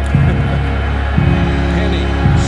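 Background music with a steady low bass line; a fuller held chord comes in about a second in.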